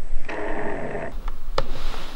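A person's brief, drawn-out vocal sound lasting under a second, followed by a sharp click.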